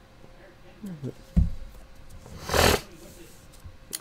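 Handling noise as a trading-card box is moved on a table: a single thump about a second and a half in, then a short hissing rustle about a second later.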